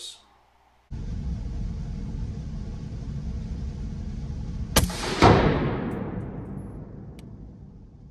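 AR-15 rifle firing .223 Remington in an indoor range: two shots about half a second apart, the second the louder, its report ringing on and dying away over a couple of seconds. Under them runs a steady low rumble of room noise.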